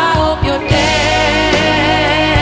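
Background music: a ballad with a held, wavering singing voice over a steady accompaniment.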